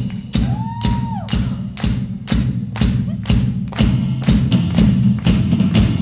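Live rock drumming: a steady beat of drumstick hits on a small drum kit, about two strokes a second, over a sustained low tone from the band's amplified instruments. A short whistle-like tone rises and falls about half a second in.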